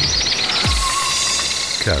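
Promo jingle music: a fast, even run of high glittering notes, with a deep falling swoosh about half a second in. A voice begins the jingle's words near the end.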